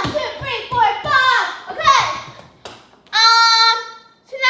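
A boy's voice making wordless exclamations that swoop up and down in pitch, then holding one long, steady note about three seconds in.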